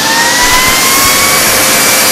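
Master Chef 1600 W upright vacuum cleaner running with suction through its hose, its motor whine slowly rising in pitch.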